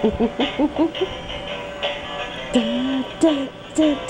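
Battery-operated toy truck playing its electronic song, a recorded voice singing over a jingle.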